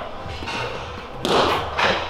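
A light boxing-glove punch landing on a bare torso with a thud a little over a second in, followed by a second, shorter smack.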